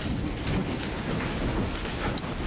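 Steady rumbling hiss of room and recording noise in a church sanctuary, with no distinct event standing out.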